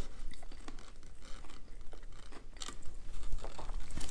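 A person chewing a mouthful of sandwich with crispy fried onion strings, giving irregular small crunchy clicks.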